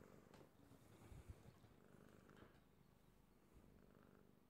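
A domestic cat purring faintly and steadily while being stroked, with a couple of soft bumps about a second in.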